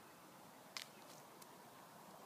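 Near silence: faint steady background hiss, broken by one sharp click a little under a second in and a fainter tick later.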